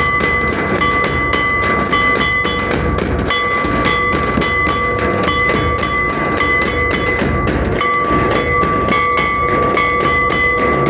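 Folk drum ensemble: a large laced kettle drum and slung two-headed drums beaten with sticks in continuous strokes, with a steady high-pitched tone held over the drumming and breaking off briefly now and then.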